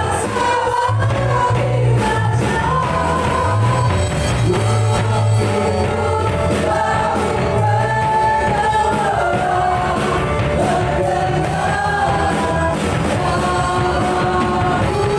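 A live worship band and vocal group performing an Indonesian praise song: several singers in unison over keyboard, electric guitar and a drum kit keeping a steady beat.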